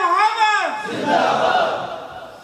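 A crowd of men shouting a religious slogan together: a loud, held, chanted call that falls away about half a second in, followed by a looser mass of voices.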